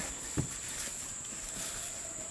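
Steady high-pitched drone of insects in the background, with a single short knock about half a second in.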